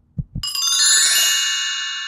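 Channel logo music sting: two short low thumps, then about half a second in a bright, shimmering chime of many high tones that rings and slowly fades.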